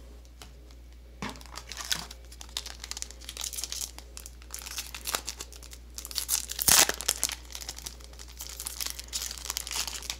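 A Digimon Card Game booster pack's shiny wrapper crinkling in the hands and being torn open: a long run of irregular crackles, the loudest a little before seven seconds in.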